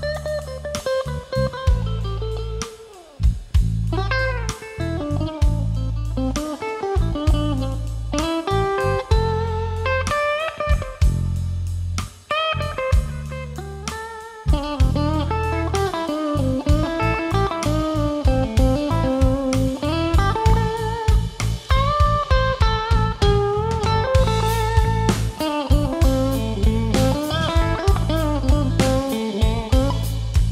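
Live blues band in an instrumental passage: a Stratocaster-style electric guitar plays a lead line with bent notes over bass and drum kit. The band dips briefly about halfway through, then comes back with a busier beat.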